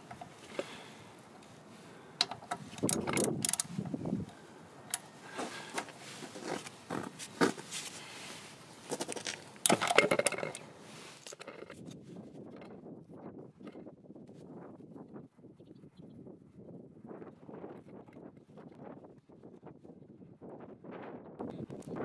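Socket wrench with a 12 mm socket working the oil drain bolt loose on a scooter's final drive gear case: irregular metallic clicks and knocks through the first eleven seconds or so. Then come fainter, quicker small ticks and rubs as the bolt is backed out.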